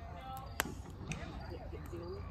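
Wood fire in a fire pit giving one sharp pop about half a second in and a smaller crack later, over faint voices.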